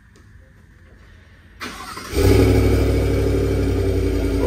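2022 GMC Sierra pickup started with its key fob: near quiet for the first second and a half, a brief crank, then the engine catches about two seconds in and runs at a steady idle.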